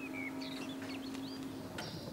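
Small birds chirping faintly, a string of short rising and falling chirps, over a steady low hum that fades out near the end.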